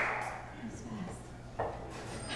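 Scattered audience clapping fading out into quiet room murmur, with one sharp knock about a second and a half in.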